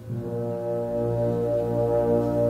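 Concert band playing a sustained low chord, led by the brass, that enters quietly and swells over about a second, then holds steady.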